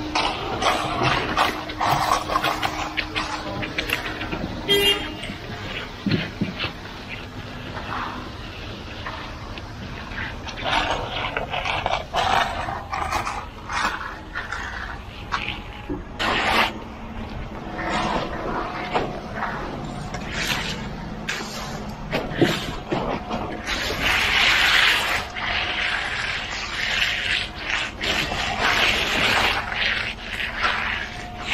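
A steel hand trowel scraping and smoothing wet concrete in irregular strokes, with a concrete pump engine running behind.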